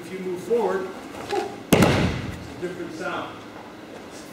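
A thrown aikido partner's body hitting the padded dojo mat in a breakfall, one sharp impact about two seconds in, the loudest sound here, with a man talking before and after it.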